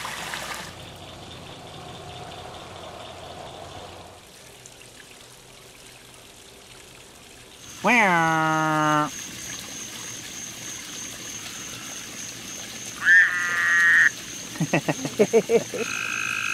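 A frog calling at the edge of a backyard pond: long drawn-out calls about eight seconds in and again near thirteen seconds, then a quick run of about eight pulsed croaks. Before the calls there is only faint trickling water.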